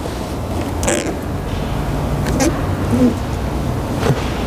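Short squeaks and creaks of hands sliding and pressing wet tint film onto a plastic headlight lens, a couple of them around two and a half and three seconds in, over a steady low hum.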